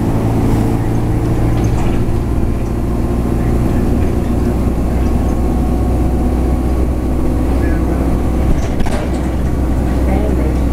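A London bus running along, heard from inside the passenger cabin: a steady low engine drone with road noise, and two small knocks near the end.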